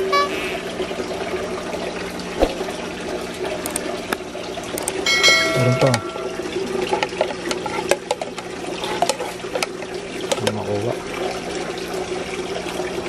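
Steady running, splashing water with a steady low hum, from aquarium filtration and aeration, with scattered small clicks.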